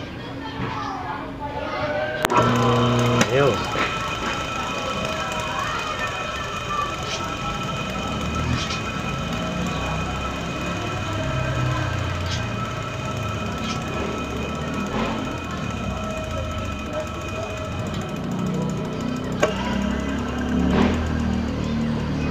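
A WEG single-phase electric motor clicks on about two seconds in, then runs steadily with a hum and a whine of several steady tones. It is running in the reversed direction, clockwise, after its lead wires were swapped.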